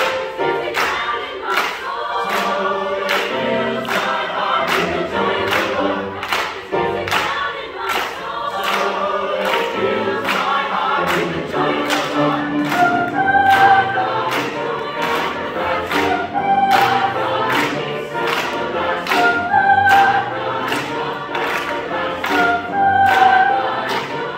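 Mixed high school choir singing a gospel spiritual, the singers clapping in time at about two claps a second. Several high held notes ring out in the second half.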